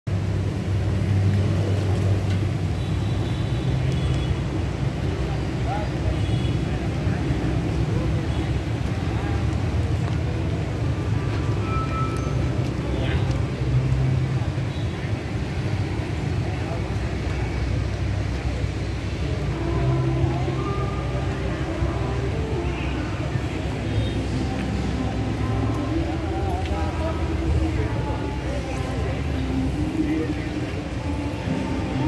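Busy outdoor ambience: a steady low rumble with background voices and music.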